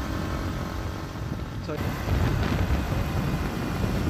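Motorcycle engine running at a steady pace with wind noise: a continuous low rumble.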